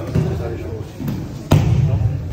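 Thuds of bodies landing on the dojo mats as aikido practitioners are thrown and take falls, a few in two seconds, the loudest about one and a half seconds in; voices in the hall behind.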